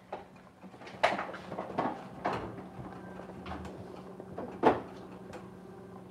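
Scattered knocks and clunks of kitchen things being handled, about five in all, the loudest near the end, over a steady low hum.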